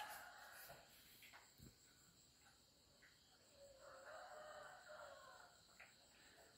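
Near silence, with one faint, distant rooster crow of under two seconds about halfway through.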